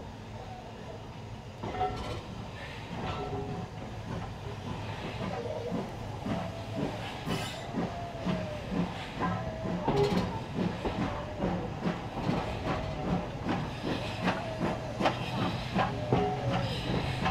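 Steam-hauled heritage passenger train running, its carriage wheels clicking over rail joints in an irregular clickety-clack over a steady rumble, growing louder after a couple of seconds.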